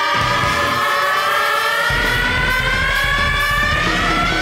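Background music: a held note with overtones that glides slowly upward in pitch, and a low, pulsing bass part that comes in about two seconds in.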